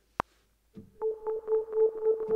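A single metronome count-in click, then a software synthesizer (Logic Pro X's gated 'Spirit' patch) played from a MIDI keyboard comes in about three-quarters of a second in: a held note chopped into rapid pulses.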